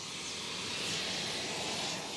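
Steady hissing rush of flame and molten metal as metal is poured from a crucible into a casting mould, swelling slightly.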